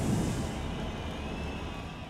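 Deep rumbling tail of a cinematic boom in an animated logo intro, fading slowly, with a faint thin high tone over it.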